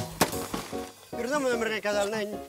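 A blade chopping into a wooden pole: a sharp chop right at the start, then a man speaking, over background music.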